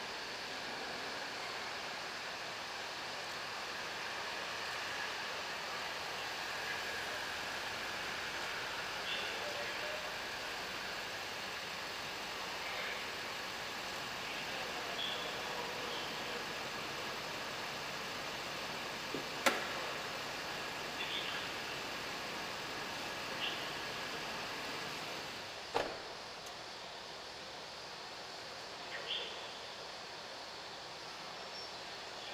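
Steady hum in an echoing concrete garage around a Chevrolet van, with a few faint squeaks and two sharp clacks, about two-thirds of the way through and again six seconds later. After the second clack the hum drops a little.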